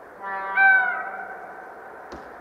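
Horn of an EP07 electric locomotive sounding a two-tone blast: a first tone, then a louder second tone a moment later that sags slightly in pitch and dies away within about a second, over steady background noise.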